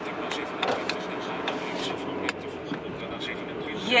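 Inside the cabin of a moving car: a steady hum of engine and tyres on the road, with a few light clicks.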